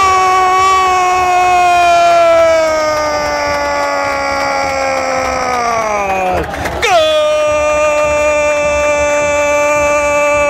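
A football commentator's long, drawn-out goal shout, a single held vowel that sinks slowly in pitch over about six seconds. A quick breath follows, then a second long held note at a steady, lower pitch.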